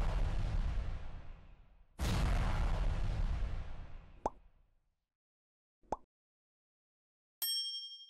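Sound effects for an animated logo and subscribe button: a heavy hit about two seconds in that fades out over a couple of seconds, then two short pops for the clicks on the like and subscribe buttons, and a bright bell ding near the end as the notification bell is clicked.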